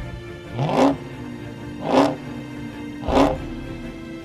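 2019 Dodge Charger SRT Hellcat's supercharged 6.2-litre V8 revved three times while staged for a standing-start launch, each rev a short surge rising in pitch, about a second apart, over background music.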